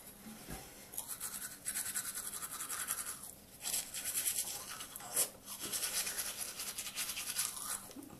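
Manual orthodontic toothbrush scrubbing teeth in fast back-and-forth strokes. The bristle scratching comes in spells, with a short break about a third of the way in.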